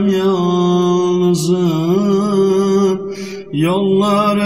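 Unaccompanied male voice singing a Turkish ilahi (Islamic hymn), drawing out one long melismatic vowel in slow, wavering bends. About three seconds in the voice stops for a quick audible breath, then comes back in on an upward glide.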